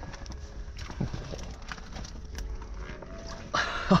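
Handling noise from an insulated fish bag being opened and a large longtail tuna pulled out of it: scattered light rustles and knocks over a low steady rumble.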